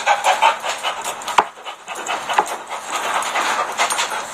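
A man laughing breathlessly in quick wheezing gasps, with one sharp click about one and a half seconds in.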